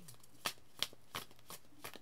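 A deck of tarot cards being shuffled by hand: several faint, short card snaps spread through the pause.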